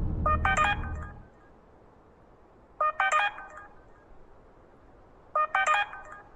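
Smartphone ringtone sounding for an incoming call: a short melodic phrase of beeping tones, heard three times about two and a half seconds apart.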